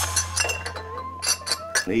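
Several light clinks of glass over a steady low hum, typical of a glass bottle and shot glass being handled; a man's voice starts near the end.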